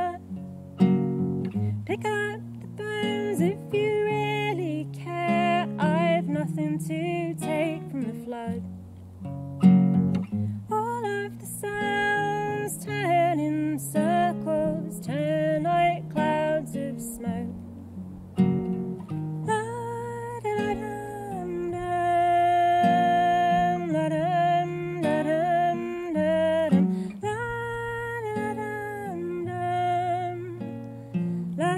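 Classical guitar played in a slow, fingerpicked song, with a woman's voice singing a long, wavering melody over it.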